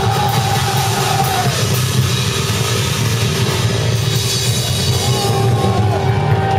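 Rock band playing live, loud and dense, with a drum kit driving it; a long held note fades out a second or two in and another begins near the end. The recording is rough and muddy.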